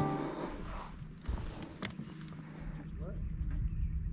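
Background music fading out, then a quiet steady hum from an electric tiller-steered trolling motor, with a few light knocks.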